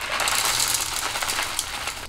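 Green hard wax beads pouring from a plastic bag into an electric wax warmer's pot: a steady rattle of many small beads landing.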